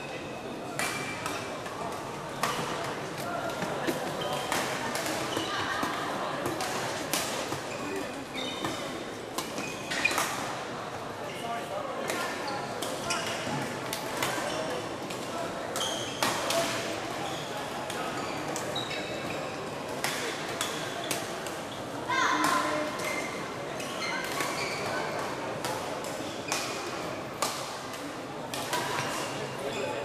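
Busy badminton hall: irregular racket strikes on shuttlecocks from several courts and brief high sneaker squeaks on the court floor, over a babble of players' and spectators' voices echoing in the large hall.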